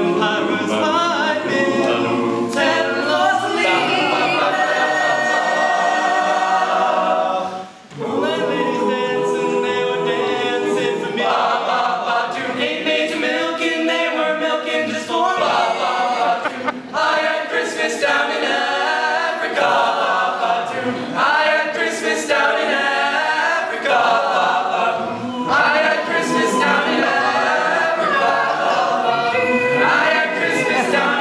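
Teenage male a cappella group singing a Christmas carol arrangement in close harmony, with voices only and no instruments. The singing breaks off briefly about eight seconds in.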